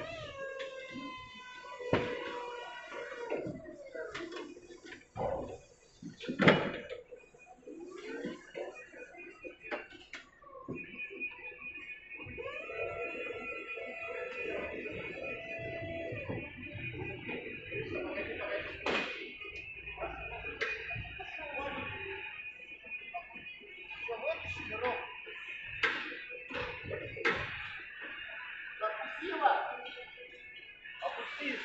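Electric forklift whining steadily while lifting a load, the whine starting about a third of the way in, among knocks and indistinct voices.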